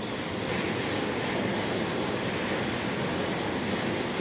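Steady rushing background noise, even and unbroken, with no distinct events.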